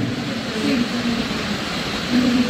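Steady rushing background noise in a large room, with a faint voice speaking off-mic underneath.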